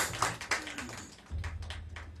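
Scattered audience clapping dying away in a small live room. Then a low steady amplifier hum comes in about a second and a half in, with a few light taps, as the band readies the next song.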